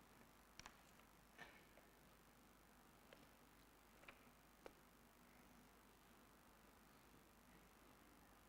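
Near silence: faint room tone with a few scattered soft clicks in the first half.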